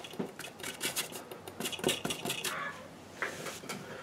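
Paintbrush scrubbing and dabbing paint onto a gessoed MDF board: a quick run of short scratchy strokes that thins out toward the end.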